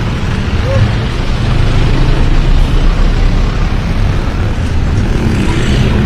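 Street traffic heard from a moving cycle rickshaw: a car and motorbikes passing close by over a steady, heavy low rumble of road and wind noise.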